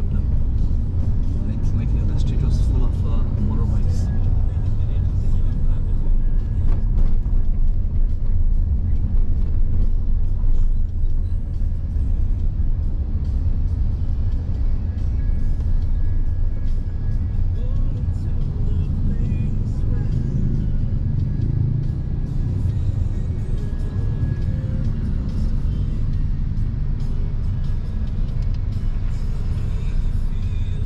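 Steady low rumble of a car driving in city traffic, heard from inside its cabin, with music playing faintly over it.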